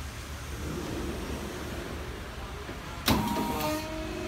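Oil-hydraulic heat press with a pull-out worktable in operation, running with a low steady mechanical noise. About three seconds in comes one sudden loud clunk as the table reaches its position under the heating plate. A steady pitched whine follows, as the hydraulics begin pressing the heat plate down.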